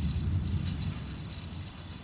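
Outdoor night ambience: a low rumble, loudest in the first second and then easing, with faint high ticking chirps running through it.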